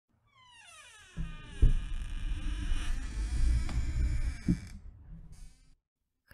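A descending pitched sweep, then a low rumble with two heavy thuds about three seconds apart, fading away near the end.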